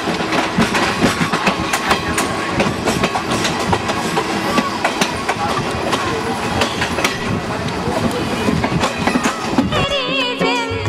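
Passenger train running along the track, heard from an open coach window: a steady rumble and rattle of the wheels on the rails, with many sharp irregular clicks and clacks over the rail joints.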